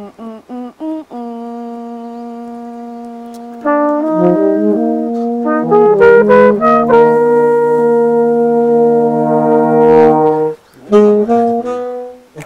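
Saxophone, trombone and trumpet playing a short phrase together by ear, coming in loudly about four seconds in and holding a long chord before a few short closing notes. A quieter single line of short notes and one held note comes before them.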